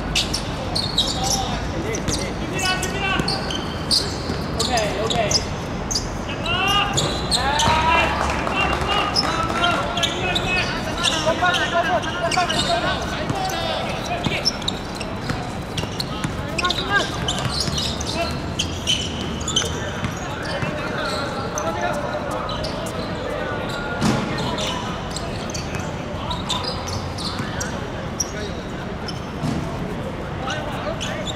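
Footballers shouting and calling to each other during play, with repeated short thuds of the ball being kicked and bouncing on a hard outdoor pitch.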